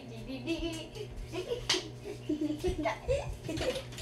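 Indistinct girls' voices and handling noises over a steady low hum.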